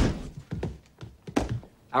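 A heavy thunk, followed by a lighter knock about half a second later and a sharp knock about a second and a half in.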